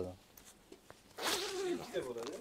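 Zipper on a hard-shell suitcase being pulled, a rasping zip of just under a second, after a few light clicks.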